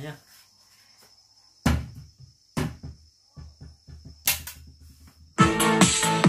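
Music from a small portable Bluetooth karaoke speaker: a few separate sharp bass hits and a click, then about five seconds in a loud electronic track with a drum-machine beat and steady synth tones starts up.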